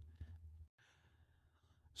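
Near silence: a faint breath in the first half-second, then low room tone.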